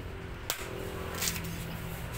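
A cleaver chopping into the husk of a green coconut: one sharp chop about half a second in, then a second, hissier cut just over a second in.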